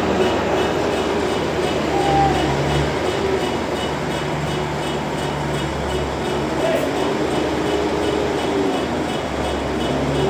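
Heavy diesel engine running steadily close by, a low drone whose note rises and falls a little.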